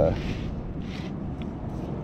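Fillet knife scraping along the backbone of a black rockfish as it cuts the fillet free: two short scrapes, one just at the start and one about a second in.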